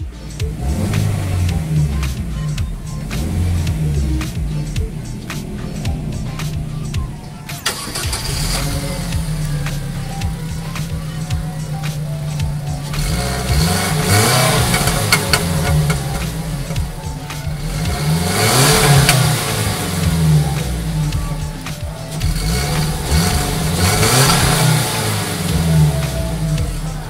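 DFSK Gelora's 1.5-litre DK15-06 petrol four-cylinder idling at about 1000 rpm, then blipped about four times from roughly 8 s on, each rev rising and falling back to idle, heard at the exhaust.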